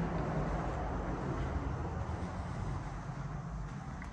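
Steady low rumble and hiss of background noise with no distinct events.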